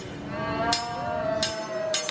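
A teppanyaki chef's metal spatula clacking against the steel griddle three times, evenly spaced, under a flaming onion volcano, while a high voice holds one long 'ooh'.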